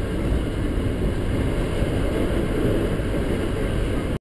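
Valparaíso Metro electric commuter train running along the track, heard from inside the carriage as a steady low rumble.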